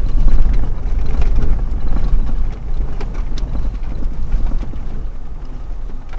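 A car driving over a rough stony dirt track, heard from inside the cabin: a heavy low rumble of tyres and body over the rocks, with scattered small clicks and rattles. It eases a little about two and a half seconds in.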